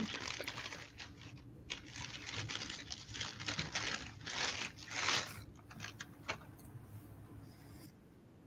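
Crinkly paper wrapping rustling and crumpling as a beer can is unwrapped by hand. It comes in irregular bursts, loudest about five seconds in, with a few light clicks after.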